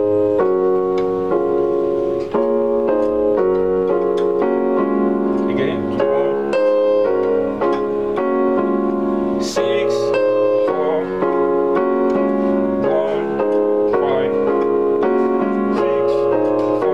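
Electronic keyboard in a piano voice playing a progression of block chords, inverted D-flat, A-flat and G-flat major triads with the melody on top, the chords changing about every half second to a second.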